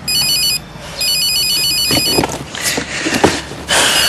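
Mobile phone ringing with an electronic, rapidly trilling ringtone in bursts: a short one at the start, a longer one about a second in, and another starting near the end. Soft knocks and rustles fill the gap between the rings.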